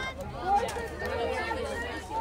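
Several voices of softball players calling out and chattering over one another, high-pitched and overlapping, with one louder call about half a second in.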